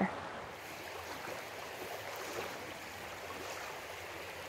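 Steady rush of a shallow river flowing, fairly faint and even.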